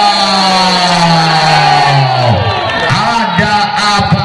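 A man's long drawn-out cry that falls steadily in pitch for about two seconds, followed by shorter vocal calls, with crowd noise behind.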